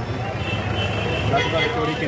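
Men's voices talking in the background over a steady low rumble.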